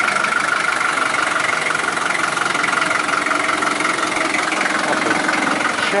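Land Rover 88 Series III's reconditioned engine idling steadily.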